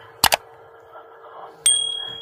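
Subscribe-button sound effect: two quick mouse clicks, then about a second and a half later a bell ding, its high tone ringing on.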